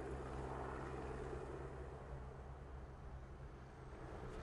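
Helicopter running steadily while it carries an underslung concrete hopper: a low, even hum under a hiss, easing slightly toward the end.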